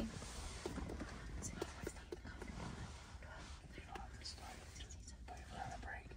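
A person whispering and muttering under their breath while counting, over a steady low rumble inside a car.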